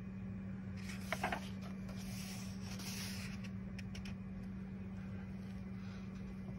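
Page of a paperback coloring book being turned by hand: a papery rustle starting about a second in, with a few sharp crackles at its start, then a couple of light ticks. A steady low hum runs underneath.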